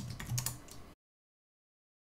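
Typing on a computer keyboard, a quick run of key clicks that cuts off suddenly about a second in.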